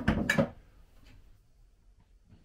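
A container taken down from a kitchen wall cupboard: a few quick knocks and clatters in the first half second, then near quiet with one faint click.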